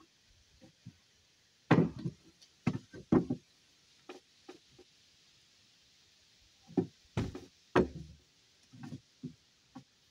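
Wooden boards knocking and clattering against a timber frame as they are handled and laid in place: irregular sharp wooden knocks, in a cluster about two to three seconds in and another around seven to eight seconds.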